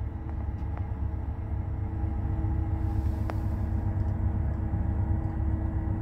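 Engine of a work vehicle running steadily at idle, heard from inside its cab: a continuous low rumble with a steady hum, and one faint click about three seconds in.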